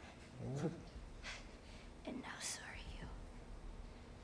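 Faint, whispered dialogue from the TV episode playing, a few short phrases with hissing consonants.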